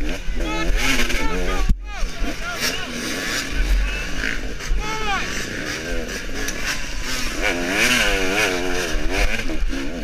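KTM 300 XC two-stroke dirt bike engine revving up and down rapidly under on-off throttle, with a brief sharp drop in level just before two seconds in.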